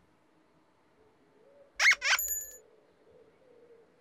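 A quick rising squeak, then a short, bright, tinkling chime, about two seconds in: light comic sound effects for a costumed children's-TV character lying down on the grass.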